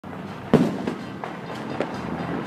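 Fireworks going off: one sharp bang about half a second in, followed by several fainter pops.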